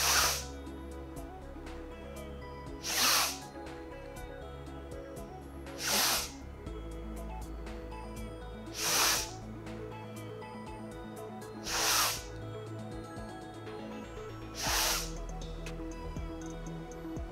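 A woman's forceful breaths close to a clip-on microphone, a short hissing rush about every three seconds, six in all: Wim Hof-style breathing. Soft background music with steady low tones plays under them.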